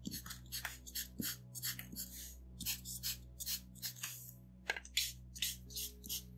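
Chisel-tip marker scratching quick, short hatching strokes across paper, about three or four strokes a second. Soft background music plays underneath.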